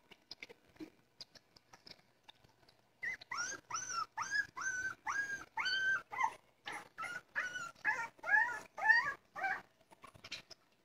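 Faint wet clicks of puppies eating from a dish. From about three seconds in come repeated high-pitched dog whines and yelps, roughly two a second, some held and some rising and falling in pitch, stopping just before the end.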